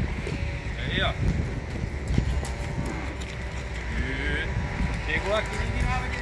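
Weaned calves bawling, a few separate calls a second or so apart.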